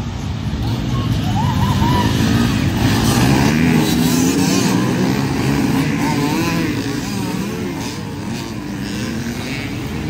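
A big pack of enduro dirt bikes revving through a dirt corner, many engines at once with their pitches rising and falling over one another. It swells to its loudest about three to four seconds in, then eases a little as the bikes keep streaming past.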